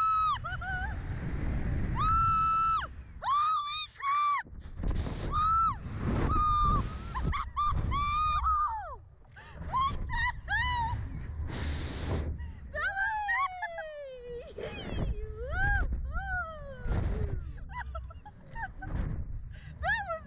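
Riders on a Slingshot reverse-bungee thrill ride screaming and laughing, mostly long high held screams, again and again, some sliding down in pitch in the second half, with a steady low rumble of wind underneath as the capsule is flung and spun.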